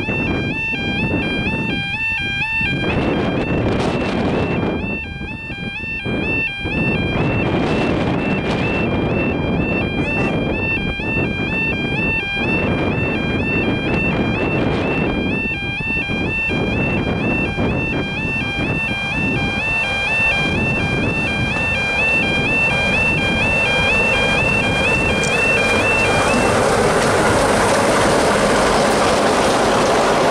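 Level-crossing alarm warbling steadily over the growing engine noise of an approaching Class 44 'Peak' diesel locomotive with its Sulzer twelve-cylinder engine. In the last few seconds the locomotive's noise drowns the alarm out as it reaches the crossing.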